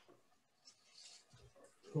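A quiet pause in a small room, with a few faint rustles and a soft low bump about a second and a half in; a man's voice starts right at the end.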